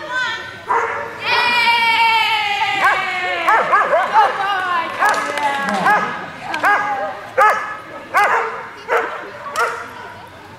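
A dog giving a long, high call that falls slowly in pitch, then barking in short, high yips, a string of them about every half second to a second.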